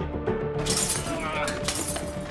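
Glass shattering: a crash with tinkling fragments about half a second in, and a second crash near the end, over film-score music.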